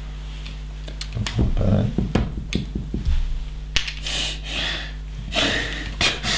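Loose LEGO plastic bricks clicking and rattling as hands pick through a pile of pieces and press bricks together, with a rustle of rummaging near the end. A low steady hum runs underneath.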